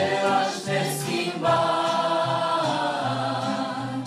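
A church worship vocal group of several women and a man singing a Romanian worship song in harmony, holding long notes with brief breaks between phrases.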